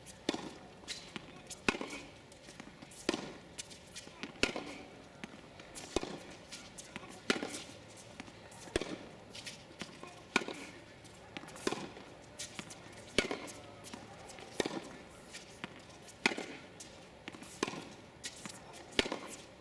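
Tennis rally: sharp racket-on-ball hits in a steady exchange, about one every one and a half seconds, with softer ball bounces on the hard court in between.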